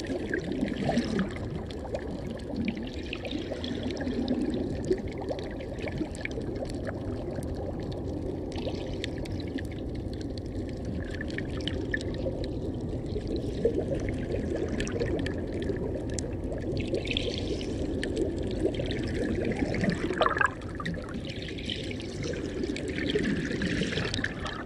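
Shallow seawater sloshing and bubbling around an underwater camera, a steady churning noise with many scattered clicks and crackles.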